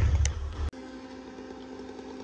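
Heavy diesel engine idling with a loud, low rumble that cuts off abruptly about two thirds of a second in, giving way to a much quieter steady hum.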